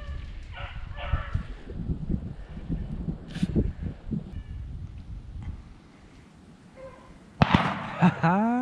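Beagles baying on a rabbit's trail in the first second or so, then a single loud shotgun shot about seven and a half seconds in.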